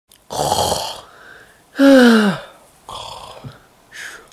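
A person doing a mock snore: a rough breath in, then a loud voiced breath out that falls in pitch, then a softer rough breath.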